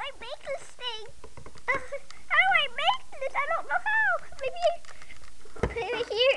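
A child's high voice in short, sliding, sing-song calls with no clear words, and a low bump about five and a half seconds in.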